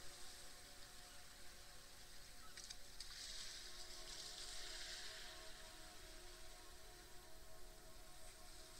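Faint, soft ambient meditation music of steady held tones, under a gentle hiss that swells for a couple of seconds midway, with a few small crackles just before the swell.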